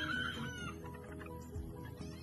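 A chicken gives one short call at the start, over background music.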